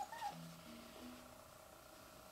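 Young black-and-white cat giving a short, faint high mew right at the start while its eyes are wiped with a wet tissue, followed by a couple of brief low murmurs.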